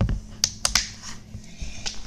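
Handling noise close to the microphone: a thump, then a quick run of three sharp clicks and one more near the end.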